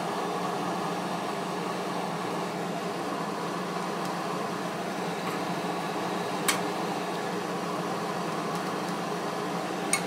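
Steady fan-like mechanical hum with a low drone, broken by one sharp click about six and a half seconds in and a quick double click near the end.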